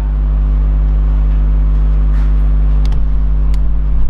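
A loud, steady low hum with a few faint clicks in the second half.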